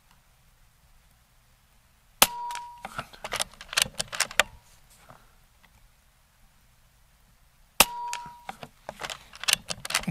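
Two shots from an Air Venturi Avenger Bullpup .22 PCP air rifle, about five and a half seconds apart, each a sharp crack with a brief metallic ring, followed by a run of clicks as the side lever is cycled to load the next pellet.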